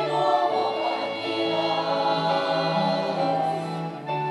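Women's vocal ensemble singing held notes in harmony, several voices sounding together.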